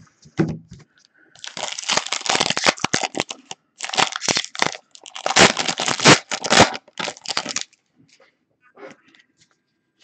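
Foil trading-card pack wrapper crinkling and tearing as it is ripped open by hand, in three or four crackly bursts from about a second in until near the end.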